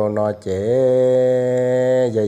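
A voice chanting a story, with a few quick syllables and then one long, steady held note from about half a second in.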